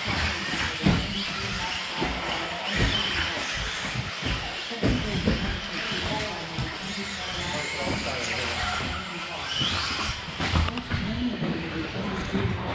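2WD electric 1/10-scale RC buggies with 17.5-turn brushless motors running on an indoor carpet track. Motor whine rises and falls with the throttle over the rolling of tyres, amid chatter in a large hall.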